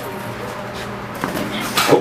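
Background music and hall noise, with two sharp smacks, one a little past a second in and a louder one near the end, typical of boxing gloves landing during sparring.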